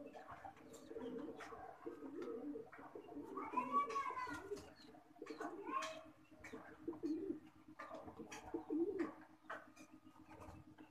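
King pigeons cooing again and again in low calls, with scattered sharp ticks between them and one higher, arching call about four seconds in.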